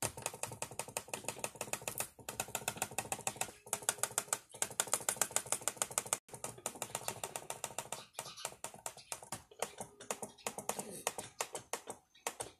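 A laptop touchpad button clicked over and over in fast runs of many clicks a second, with a few brief pauses between runs.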